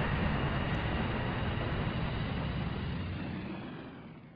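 Jet airliner engine noise, a steady rush with a sweeping, swishing change in pitch as it passes, fading away toward the end.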